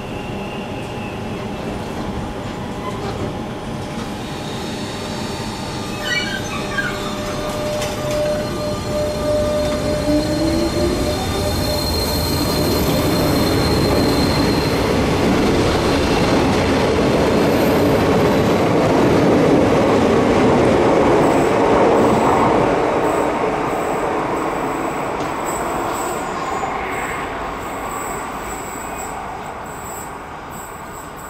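A Renfe Cercanías electric commuter train pulls out along a tightly curved platform. The motor whine rises in pitch as it gathers speed, and the wheels squeal high on the sharp curve. The sound builds to its loudest past the middle, then fades as the train leaves.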